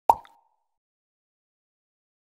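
A single short cartoon 'plop' sound effect right at the start, a quick pop with a brief ringing tail that dies away within half a second.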